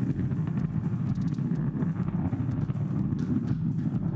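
Falcon 9 first-stage Merlin engine running its landing burn, heard through the booster's onboard camera: a steady deep rumble as the stage slows through the last seconds before touchdown.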